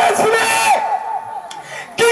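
A loud, high-pitched voice shouting, with a bright hiss above it; it drops away about a second in.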